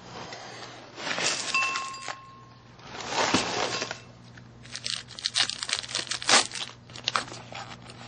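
Dry cereal pouring from a cardboard box into a ceramic bowl, a rustling swell about three seconds in. Around it are crinkling, rustling paper and packaging sounds and a run of quick, crackly clicks.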